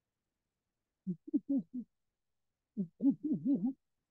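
A muffled person's voice, low and dull with no crisp upper tones: two short runs of syllables, one about a second in and one near the end, with dead silence around them.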